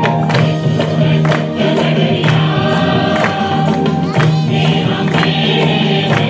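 Hindi Christian praise and worship song: choir singing over instrumental accompaniment with a regular percussion beat.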